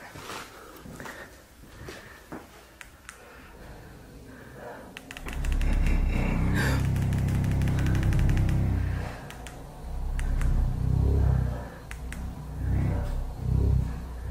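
An adjustable bed's massage motor switches on about five seconds in: a low vibrating hum with fine rattling, swelling and easing several times as the bed shakes.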